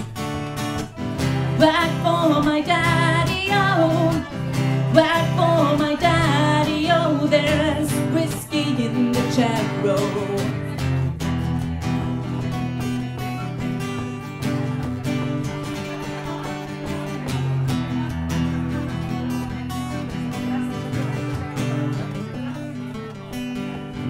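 Acoustic guitar playing an instrumental passage between sung verses: a melodic riff over the first half, then steady strummed chords.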